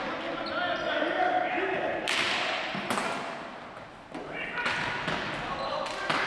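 Ball hockey play on a gymnasium floor: several sharp clacks of sticks and the ball hitting the hard floor, with the loudest about two seconds in, each ringing on in the hall's echo, amid players' shouts.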